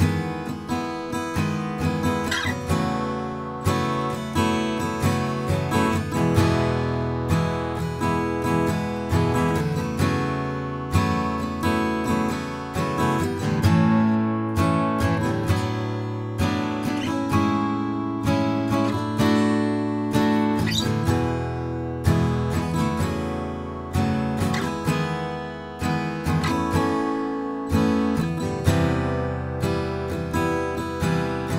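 Steel-string Gibson acoustic guitar played with a pick, a steady run of picked and strummed chords with closely spaced, regular attacks.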